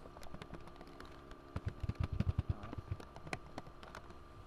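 Typing on a computer keyboard: irregular key clicks, with a quick, louder run of keystrokes about halfway through.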